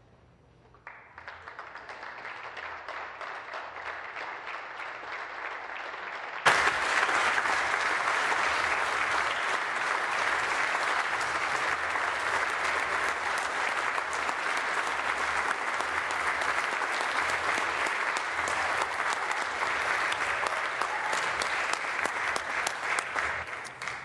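Legislators applauding: the clapping starts faintly about a second in, jumps suddenly louder about six seconds later, carries on steadily, then dies away near the end.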